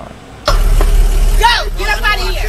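Playback of a recorded video clip starting suddenly about half a second in: a man's voice over heavy background noise and a strong low hum.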